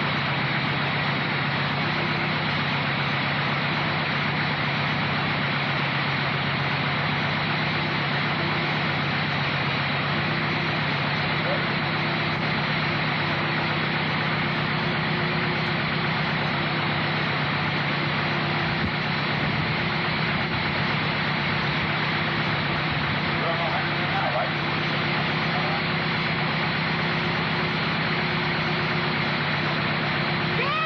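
Dune buggy engine idling steadily, with a constant hum and no revving.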